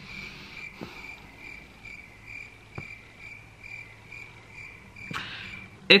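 A cricket chirping steadily, a high chirp repeating about three times a second, stopping near the end.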